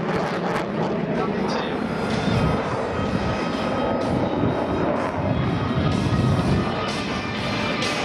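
Dassault Rafale's twin Snecma M88 turbofan engines roaring as the jet manoeuvres overhead in a display. It is a continuous rushing jet noise that swells about two and a half seconds in and again around six seconds.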